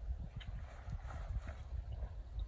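A mule's hooves shifting and stepping on a plastic tarp laid over gravel, a few faint steps over a low, steady rumble.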